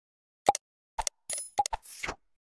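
Sound effects of an animated subscribe-button graphic: a quick series of about five short pops and clicks, followed by a brief swoosh near the end.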